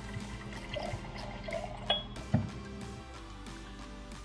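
Background music over bourbon being poured from the bottle into a glass jar, with a short knock about two seconds in.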